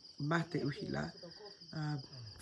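Crickets chirping in a high, steady, evenly pulsing trill, with a woman's voice over it.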